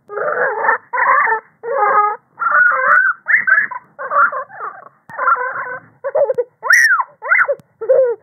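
A child crying in a run of sobbing bursts, one or two a second, with a higher rising-and-falling wail about seven seconds in.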